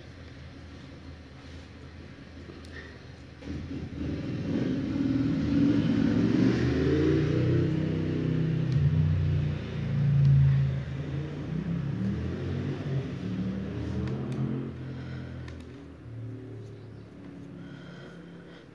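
A low engine rumble that builds about three and a half seconds in, swells to its loudest around ten seconds, with its pitch wavering, and fades away near the end.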